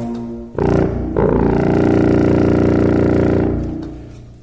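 Unaccompanied contrabassoon playing a brief low note, then one long held note rich in overtones that fades away near the end.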